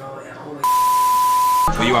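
An electronic beep sound effect: one steady, high tone over a hiss of static, lasting about a second and louder than the talk around it. It stops abruptly as the picture cuts to another scene.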